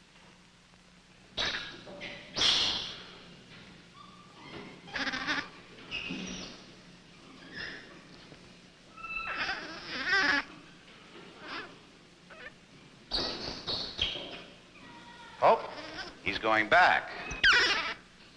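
Infant rhesus monkey crying in a series of high, wavering calls, in about seven separate bouts with short quiet gaps between them.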